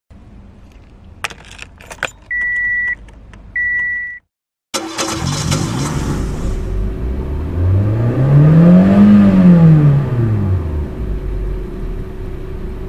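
Clicks of a car ignition key being turned in the key switch, then two steady warning beeps. After a short break, a car engine comes in and revs up once and back down, loudest at the top of the rev, then runs on steadily.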